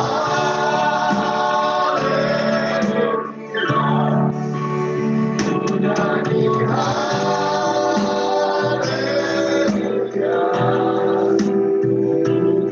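Church worship song: voices singing over instrumental backing, in long held phrases.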